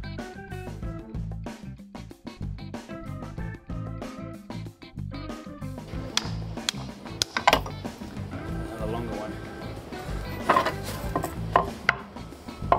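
Background music with a steady beat. From about six seconds in, a hammer strikes a wooden block held against a stainless-steel rudder fitting, giving a number of sharp, separate knocks over the music.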